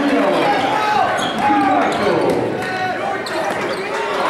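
A basketball dribbling on a gym court, among overlapping indistinct shouts and voices of players and spectators.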